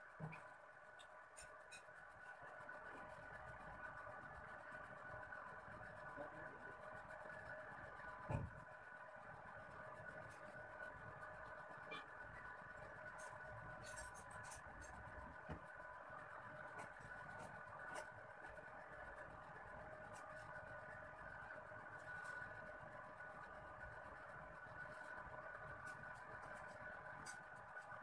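Faint room tone: a steady low-level hum, with scattered soft ticks and one louder knock about eight seconds in.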